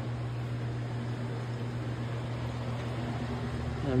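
Steady low hum with an even hiss underneath: room background noise.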